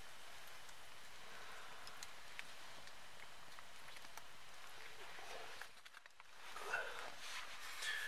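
Faint, steady outdoor hiss with a few small ticks. It dips briefly to near silence about six seconds in.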